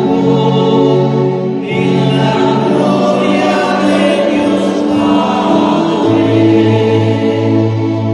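Small church choir singing a hymn in unison with electric keyboard accompaniment, in long held notes with the chords changing every second or two.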